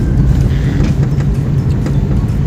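Car driving slowly on a rough dirt road, heard from inside the cabin: a steady low engine and road rumble with scattered small knocks and rattles.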